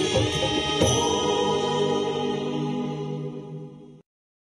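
Devotional chanting with music, fading out over the last second and a half.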